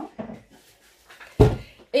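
A single dull, heavy thump about a second and a half in, of something weighty knocking against a kitchen surface. The rest is quiet.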